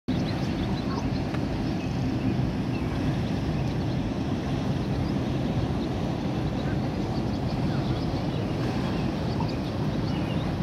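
Steady low rumble of an approaching passenger ferry's engines, with the wash of water at its bow.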